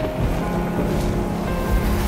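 Dramatic orchestral score with a rushing, wind-like whoosh sound effect laid over it. The whoosh starts suddenly and swells again about halfway through and at the end.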